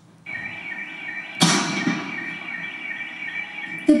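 An alarm sounding with a steady high tone and a quick repeating pulse. A sudden loud bang cuts in about a second and a half in and fades quickly.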